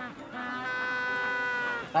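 Magellanic penguin braying: one long, steady donkey-like call that starts about a third of a second in and is held for about a second and a half.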